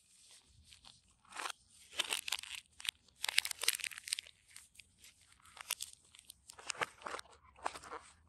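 Irregular crinkling and rustling as nitrile-gloved hands handle a coiled USB cable with its paper band and push it back into a cardboard box. It comes in short crackly bursts starting about a second and a half in.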